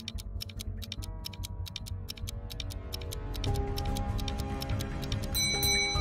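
Background music with a quick, steady clock-like ticking over held chords, the ticking countdown heard during a riddle's thinking pause; the chords change about three and a half seconds in, and a few high bell-like tones come in near the end.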